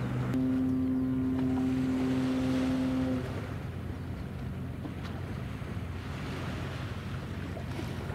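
Transport ship Ōsumi's whistle sounding one long, steady blast of about three seconds, which stops abruptly. A lower steady horn tone ends just as the blast begins.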